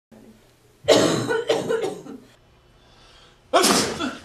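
A person coughing, a run of three harsh coughs about a second in, then one more sharp burst near the end.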